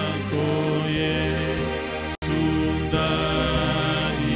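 A man's voice singing a slow worship song through a microphone and PA, in long held notes that slide from one pitch to the next over a steady low accompaniment. The sound cuts out for an instant about two seconds in.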